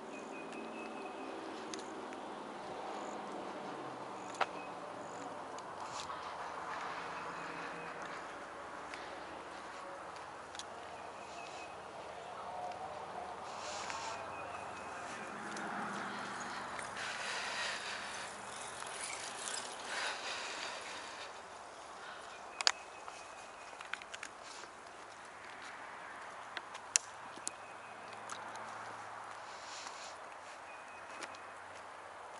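Wooded trail ambience: a small bird gives a short high chirp every few seconds over footsteps on asphalt, with a few sharp clicks in the second half.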